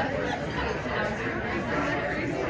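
Indistinct chatter of many people talking at once in a room.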